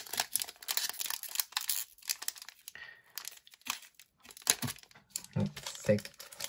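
Foil wrapper of a Pokémon trading card booster pack being torn open and crinkled by hand: dense crackling for the first couple of seconds, then sparser crinkles.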